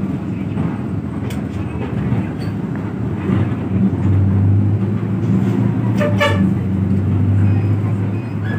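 Bus engine and road rumble heard from inside the passenger cabin, growing louder about halfway through. A vehicle horn toots briefly about six seconds in.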